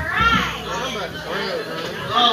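Indistinct chatter of several voices talking over one another, with no music playing. A brief low thump comes right at the start.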